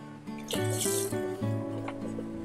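A hooked catla fish splashing at the water surface about half a second in, a short loud splash, over steady background music.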